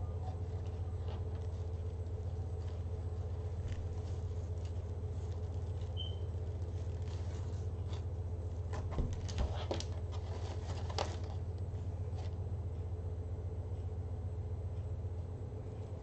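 A steady low hum under faint rustling as hands work pipe cleaners through a deco mesh wreath, with a few light clicks about halfway through.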